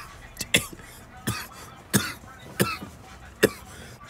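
A man coughing, about five short coughs spaced over the few seconds, while smoking a blunt in a smoke-filled enclosed space.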